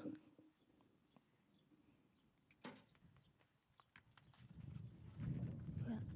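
Recurve bow being shot: a single sharp snap of the string releasing the arrow about two and a half seconds in, otherwise very quiet. A low rushing noise builds in the last couple of seconds.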